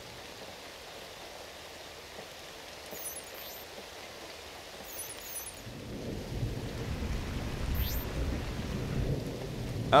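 Steady rain hiss, then a low rumble that builds from about six seconds in as storm water surges into a street drain. A few faint, short high electronic chirps sit over it.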